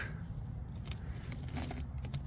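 Faint, scattered clinking and rattling of small crushed steel battery-case fragments shifting in a gloved hand, over a low steady rumble.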